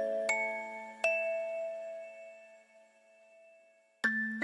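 Music box playing a slow melody: two notes plucked in the first second, then the tones ring on and fade away almost to silence, a pause at the end of a phrase.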